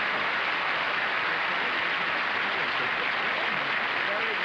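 Studio audience applauding steadily, with faint voices underneath.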